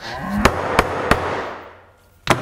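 A mallet beating a hide of leather on a workbench: three sharp strikes about a third of a second apart, over a hiss that fades out over about a second and a half.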